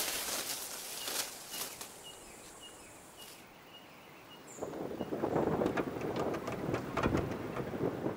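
Outdoor ambience: a small bird chirping over and over, about twice a second, then a louder rough rushing noise that sets in about halfway through and carries on.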